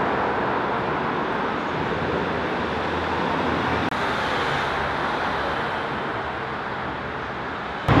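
Steady urban background noise, a continuous even rumble and hiss that eases slightly toward the end.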